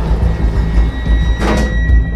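Elevator door sliding shut, with a brief noisy rush about a second and a half in, over background music with a heavy bass.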